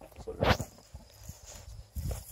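A sow gives one short grunt about half a second in, then there is faint rustling of footsteps in straw.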